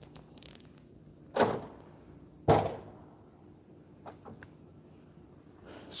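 A door banging twice, two thuds about a second apart, each with a short fading tail.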